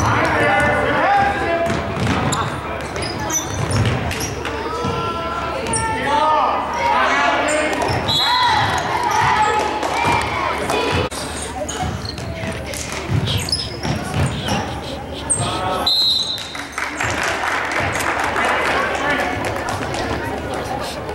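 A basketball being dribbled and bouncing on a hardwood gym floor during a game, with spectators' voices and shouts. Two brief high-pitched squeaks come about eight seconds in and again near the end.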